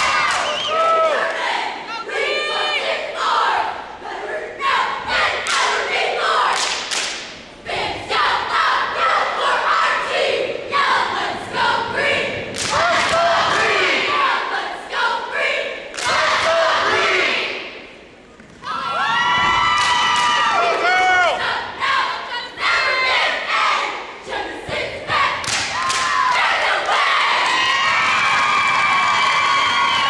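Cheerleading squad shouting a cheer in unison, long drawn-out words broken by sharp claps and stomps, with the crowd cheering. The chant drops away briefly a little past halfway.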